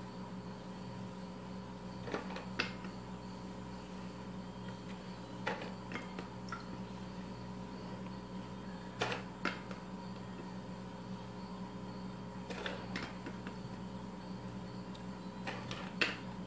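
A few light taps and clicks, several in quick pairs, as chocolate biscuits are set by hand onto the cream layer in a glass dish, over a steady low hum.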